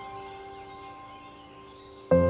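Background music: several bell-like chime notes ringing on and slowly fading.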